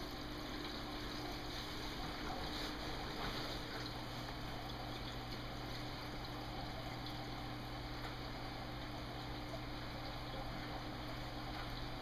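Water running steadily into a home-built acrylic sump as it fills for a leak test, with a steady low hum underneath.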